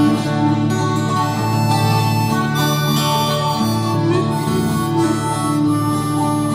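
Instrumental outro of a folk-song cover with no singing: a harmonica plays held melody notes over guitar chords.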